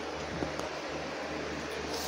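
Steady background hiss and low hum, as from a fan or air conditioner, with soft handling noise as a phone is moved about over bedding.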